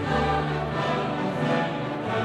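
Choir singing over orchestral music, in long held notes.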